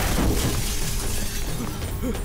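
Film crash effect: car window glass shattering as a man lands on an SUV's roof, a dense spray of breaking glass, with action background music underneath.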